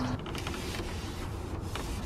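A microfiber towel rubbing over the plastic dashboard of a Ford Crown Victoria, a scratchy wiping sound over a steady low hum.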